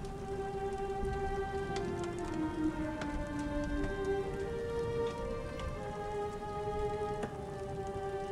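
Slow, soft instrumental music of held notes that shift gently in pitch, over a steady hiss of falling rain.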